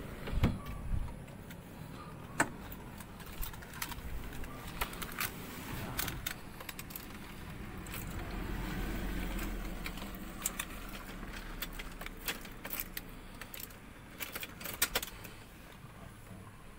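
A car door is opened and someone climbs into the driver's seat with a couple of thuds, then a run of small metallic clicks and key-ring jangles as the ignition key is put in and turned to on. A low rumble swells and fades about halfway through.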